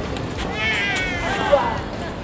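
A person's high, wavering drawn-out cry whose pitch falls away at the end, and a short knock about one and a half seconds in.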